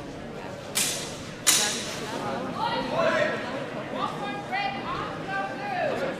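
People talking in a large sports hall, with two sharp clacks less than a second and about a second and a half in.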